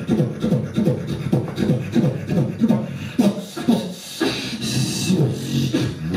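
A beatboxer performing solo into a handheld microphone: a fast, steady rhythm of bass pulses with low, falling vocal tones. About four seconds in comes a hissing sound lasting about a second.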